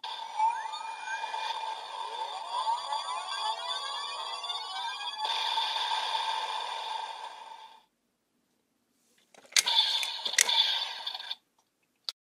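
DX Evol Driver transformation-belt toy playing its electronic sound effects and music through its small speaker, with rising, sweeping tones, then cutting off. After a short pause, two sharp plastic clicks about a second apart come as the bottles are pulled out, each with another brief burst of toy sound.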